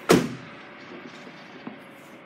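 A car door being shut: one loud thud with a short decay, followed by a faint click later on.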